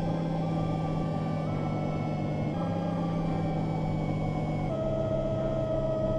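An electric rotary power tool's motor running steadily, its pitch shifting slightly about two and a half seconds in and again near five seconds in, as the load changes.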